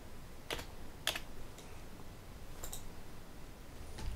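A few separate computer keyboard keystrokes, faint clicks: one about half a second in, another at about a second, and a quick pair near the end, typing a number into a field.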